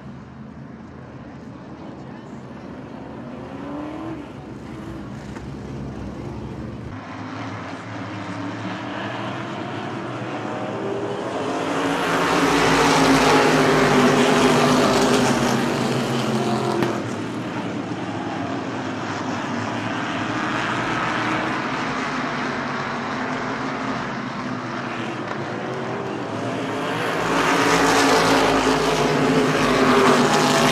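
A field of race car engines on a short oval, heard from the grandstand. The sound builds as the pack passes close about twelve seconds in, eases, then swells again near the end, with engine pitch rising and falling as the cars go by.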